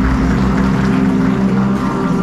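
Recorded dance music playing loudly, with heavy bass and long held low notes.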